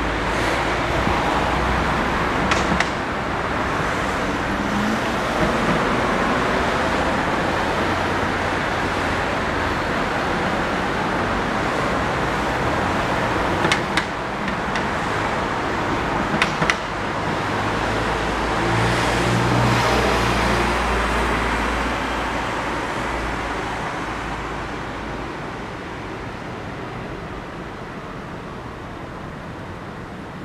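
City street traffic: a steady wash of passing cars, with one vehicle passing close about two-thirds of the way through before the noise eases off toward the end. A few short sharp clicks stand out above it.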